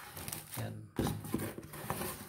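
Rustling and scraping of a cardboard box and plastic packaging as hands reach into the box and handle a bagged item, with a short spoken word about a second in.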